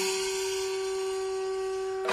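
Conch shell (shankha) blown in one long, steady note, with a fading hissing wash behind it.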